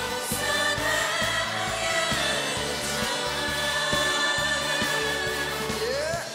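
Trot song performed live: several voices singing long held notes together over a band with a steady bass and drum beat.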